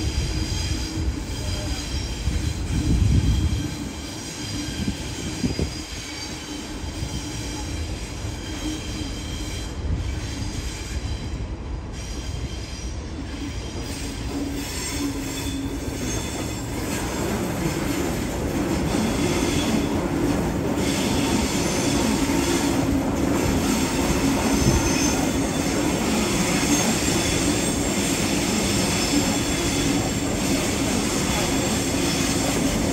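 Double-deck Waratah electric trains moving slowly through the tracks, their wheels squealing in high thin tones over a low rumble. The train noise grows louder from about halfway as more carriages pass.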